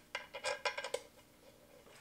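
Light metallic clinks of titanium bolts being handled and started into the top of an engine's front cover, a quick run of about eight small clicks in the first second.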